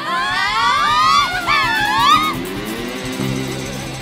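Several voices whooping and cheering at the end of a live band's song, their yells rising in pitch over the first two seconds, with the band's last notes still sounding underneath.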